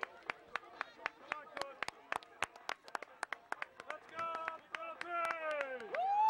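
Scattered hand clapping from spectators, sharp separate claps several a second. In the last two seconds, high-pitched voices call out, one sliding down in pitch.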